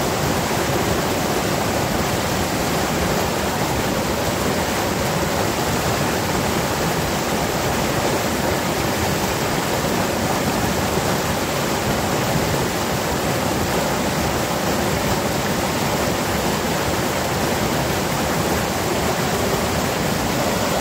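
Rocky forest stream pouring in a small cascade over boulders under a fallen log: a steady rush of white water.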